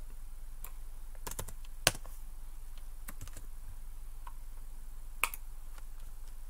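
Scattered clicks of a computer keyboard and mouse, about a dozen irregular taps, with a louder one near two seconds in and another just after five seconds, over a faint steady hum.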